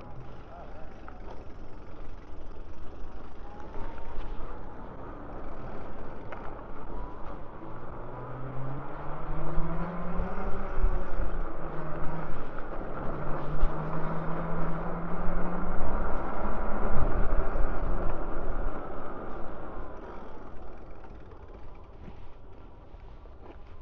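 Wind and riding noise buffeting the camera microphone on a moving e-bike, swelling louder through the middle. A low droning tone rises, holds for a few seconds and fades out in the middle.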